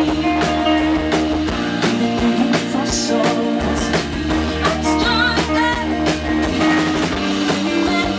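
Live indie rock band playing: electric guitars, bass guitar and a drum kit with a steady beat, and a woman singing lead.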